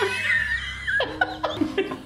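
People laughing: a long high-pitched laugh for about the first second, then shorter bursts of laughter.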